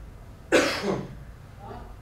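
A single loud cough about half a second in, brief and harsh, followed by a faint murmur.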